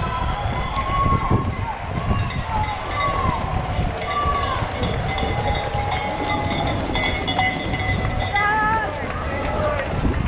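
A runner's footfalls and the jostling of a carried camera while running a road mile on wet pavement. Short shouts from spectators come and go, with a longer wavering call near the end.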